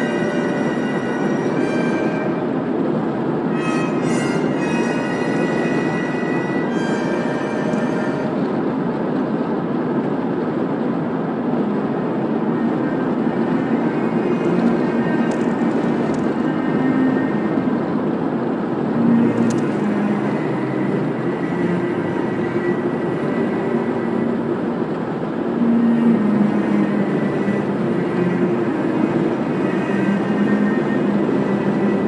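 Steady tyre-and-engine noise heard from inside a car cabin cruising on an open highway. Car-radio music plays underneath for about the first eight seconds, then stops, leaving only the road noise.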